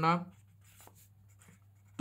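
Pen writing on notebook paper: faint short scratching strokes as a circled numeral and letters are written.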